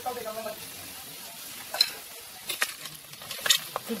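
Pork fatback pieces frying in hot oil as they turn golden, a steady sizzle. A metal skimmer stirs them in the metal pot, giving a few sharp clicks and scrapes about halfway through and near the end.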